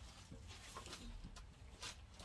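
Near silence: a low steady room hum with a couple of faint taps, about a second and a half in and just before the end.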